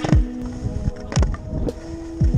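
Electronic background music: a deep kick drum that drops in pitch, about two beats a second, over held synth notes.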